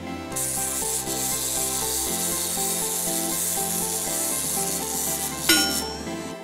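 Clockwork mechanism of a wind-up Minion toy giving a steady, high rough noise for about five seconds, over background music; a short sharp sound with a falling tone comes near the end.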